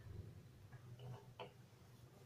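Near silence, with four or five faint light ticks in the second half-second to second and a half as dough is worked on a wooden rolling board with a wooden rolling pin.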